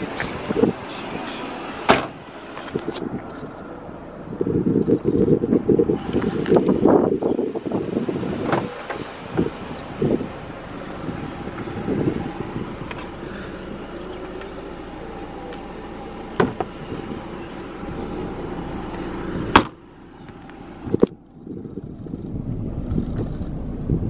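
Wind rumbling on the microphone, broken by several sharp clunks and knocks; the loudest comes about two-thirds of the way through.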